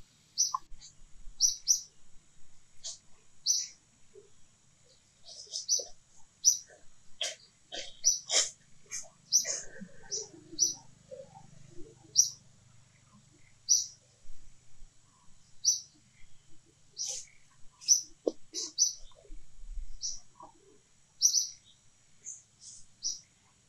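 Small bird chirping: short, high notes repeated every second or two, with a busier stretch of mixed lower clicks and calls about seven to eleven seconds in.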